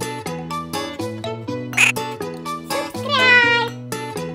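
Upbeat children's music with a steady beat, over which a kitten meows: a short call near two seconds in, then a longer meow falling in pitch about three seconds in, the loudest sound here.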